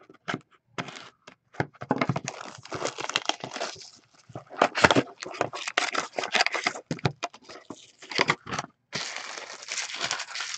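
Trading card pack wrappers being torn open and crinkled, with cards and packaging handled close to the microphone: a busy, irregular run of rips, crackles and clicks, with longer tearing rasps about five seconds in and again near the end.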